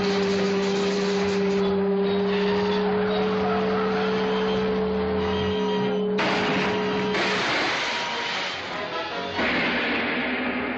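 Dramatic film-serial soundtrack: music and car engine noise over a steady two-note hum. The hum stops about seven seconds in.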